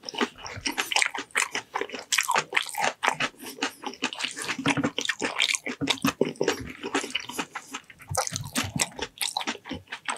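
Close-miked chewing of braised ox foot: a dense, irregular run of wet mouth clicks and smacks as the gelatinous skin and tendon are chewed.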